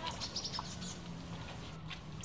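Birds chirping faintly, with a few short high chirps in the first second.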